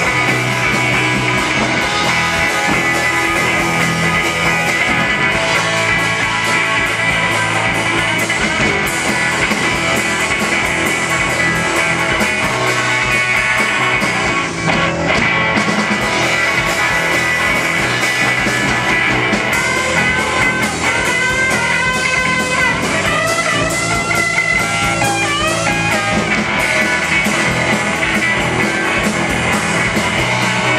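Live rock band playing loud amplified instrumental rock: distorted electric guitar, bass guitar and drum kit. From about twenty seconds in, a higher lead line bends up and down in pitch over the band.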